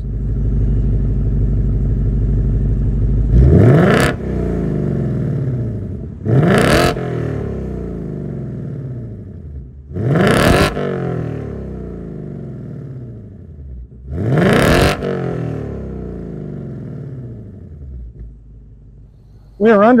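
Ford Mustang Dark Horse's 5.0-liter Coyote V8 idling through its active-valve quad-tip exhaust, then revved four times, about one blip every four seconds, each rising sharply in pitch and sinking back to idle.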